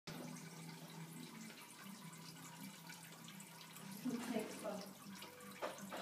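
A Bengal cat urinating into a toilet bowl from the seat: a faint, steady trickle into the water.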